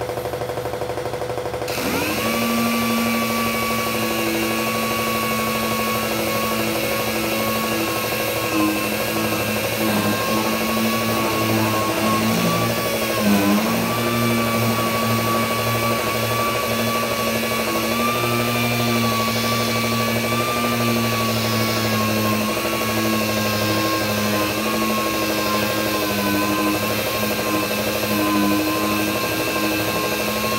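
Random orbital sander starting up about two seconds in and running with a steady whine and hiss as its pad sands the old paint off a steel pickup tailgate; its pitch dips briefly around the middle.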